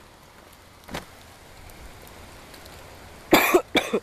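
A person coughs twice in quick succession near the end, loudly. Before that there is only a faint steady background and a single click about a second in.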